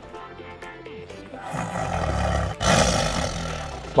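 Two big-cat roars over background music: the first starts about one and a half seconds in, and the second, louder one follows straight after and fades away near the end.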